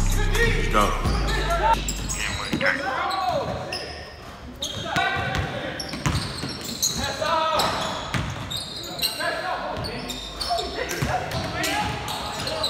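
Live sound of a pickup basketball game in a large echoing gym: players' voices calling out, and a basketball bouncing on the hardwood court in repeated sharp knocks. The low notes of a music track die away in the first two seconds.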